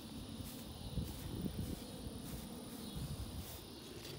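Footsteps and the rustle of dense watermelon vines and grass as someone walks through the patch, an irregular low brushing with a few soft thuds.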